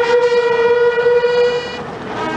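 A group of long valveless fanfare trumpets playing a ceremonial fanfare, holding one long loud note that ends shortly before the end.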